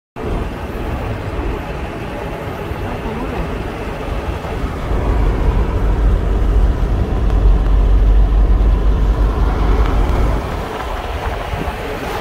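Car travelling on a highway, heard from inside the cabin: steady road and engine noise with a heavy low rumble that swells about halfway through and eases back near the end.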